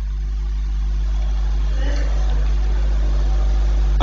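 Steady low hum and rumble from the microphone and sound system, growing slightly louder, with faint indistinct sounds from the room.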